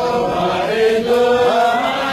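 A group of men chanting Sufi dhikr together in unison, in long held notes that slide from one pitch to the next without a break.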